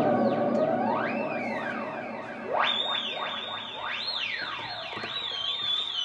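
Electronic outro music of swooping synthesizer tones, the pitch gliding up and down with trailing echoes, like a theremin or siren. About two and a half seconds in, a new sweep rises sharply, and near the end a high wavering tone holds.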